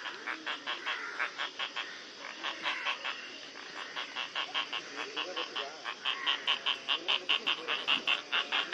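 Asian openbill stork bill-clattering: a fast, even train of clacks, about five or six a second, easing off briefly a couple of seconds in and growing louder near the end.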